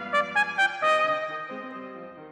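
Solo cornet playing a quick run of separately tongued notes over sustained brass band chords, landing on a held note about a second in that then fades.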